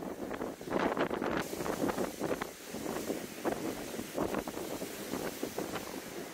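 Storm-force wind buffeting the microphone in uneven gusts, over rough sea surging and breaking against a sea wall. About a second and a half in, the sound changes abruptly and a steady high hiss comes in.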